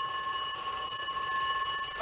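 Fire station's twin-gong electric alarm bell ringing steadily, sounding a call-out.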